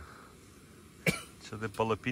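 A single short cough from a man about a second in, after a moment of faint background, followed by him starting to speak.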